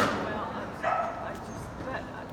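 A dog barking: two barks about a second apart, the first sharp and the loudest.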